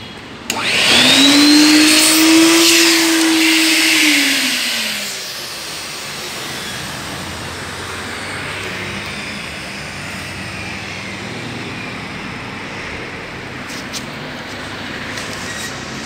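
A 1988 Simtel Aquamatic Wet & Dry 20 vacuum cleaner is switched on about half a second in. Its motor whine rises in pitch as it spins up and runs loud for about four seconds. The whine then drops in pitch and the machine settles into a quieter, steady rush of air, with a few light clicks near the end.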